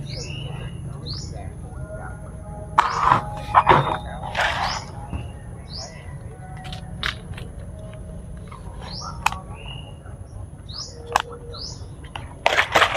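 A small bird chirping repeatedly, short high sweeping chirps every second or two, over a thin steady high tone. A few louder noisy bursts come about three to four and a half seconds in.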